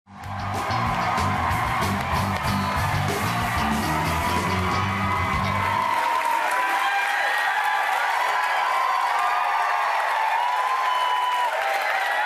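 Studio house band playing walk-on music over an audience's applause, cheering and whoops. About halfway through, the band's low notes drop out, leaving the applause and whoops.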